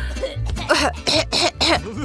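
A woman giving a series of put-on coughs and throat-clearings, feigning the flu, over background music with a steady bass.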